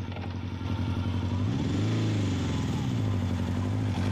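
Motorcycle engine running steadily. About a second and a half in, its pitch rises as it is revved, then eases back to a steady run.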